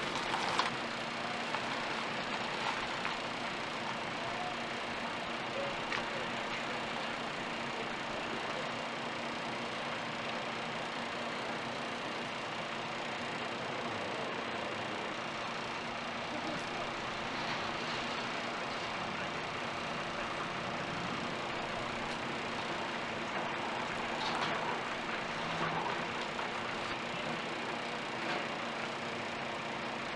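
Steady city street noise with traffic.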